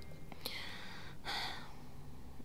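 A woman's soft breathing: two short breaths, the second about a second and a quarter in, as she gathers herself before speaking.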